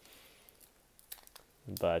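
Near quiet with a faint crinkle and a few small ticks from a hockey card pack's wrapper being handled in the fingers; a man's voice says a word near the end.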